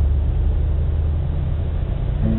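Low, steady rumble of a vehicle engine.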